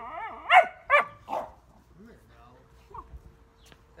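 A puppy barking: two short, sharp barks about half a second apart in the first second or so, then quieter.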